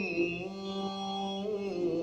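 A man's unaccompanied voice singing an Urdu Muharram lament (noha), holding one long note that begins to waver near the end.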